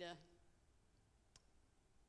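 Near silence: room tone after the end of a spoken word, with one faint, brief click about halfway through.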